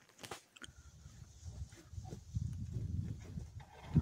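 Uneven low rumbling on the microphone while walking up to a cabin door, with a light click just after the start. It ends with a knock as the wooden door is opened.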